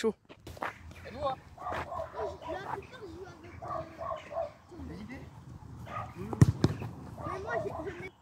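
Faint, indistinct voices calling across an open park, and one sharp thump about six and a half seconds in from a football being kicked.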